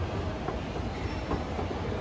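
Schindler 9300AE escalator running at 0.5 m/s, heard from on its steps: a steady low rumble of the steps and drive with a few faint clicks.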